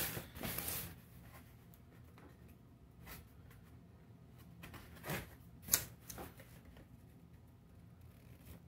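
Small knife scraping and cutting at the tape of a cardboard box: a few short scratchy strokes, the sharpest two a little after five seconds in, with quiet handling rustle between. The knife cuts poorly.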